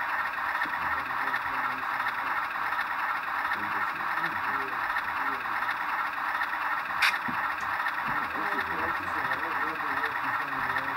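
Indistinct voices of people talking under a steady hiss, with one sharp click about seven seconds in.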